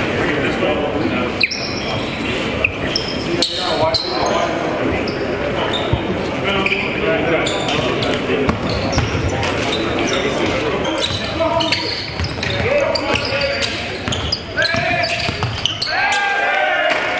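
Basketball practice gym: balls bouncing on the hardwood floor with repeated sharp knocks, over a steady layer of indistinct players' voices, echoing in a large hall.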